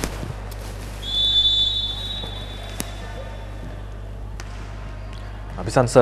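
Referee's whistle, one long steady blast starting about a second in, authorising the next serve. A few sharp knocks on the court follow.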